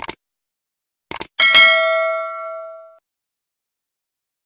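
Subscribe-button animation sound effect: a mouse click, then a quick double click about a second in, followed by a bright notification-bell ding that rings with several overtones and fades over about a second and a half.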